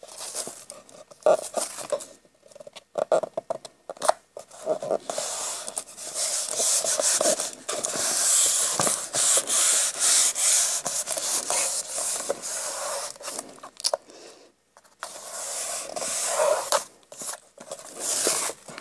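Hands rubbing and smoothing damp, Mod Podge–glued paper flat onto a binder cover, a dry brushing rub over the paper. It comes in separate strokes and taps at first, then runs as nearly continuous rubbing from about six seconds in, with a short pause near the end.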